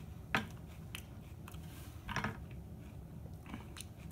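A person chewing a mouthful of raw jalapeño pepper: a few short, separate crunches and wet mouth clicks, the loudest about a third of a second in and another around two seconds in.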